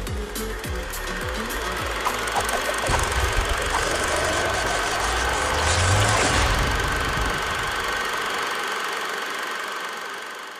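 Electronic music sting for an animated logo. A few descending drum hits open it, then a rushing swell builds to a low boom about six seconds in and fades out near the end.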